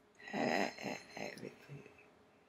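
A woman's wordless vocal sound in four or five short pulses, the first the loudest and the rest fading away.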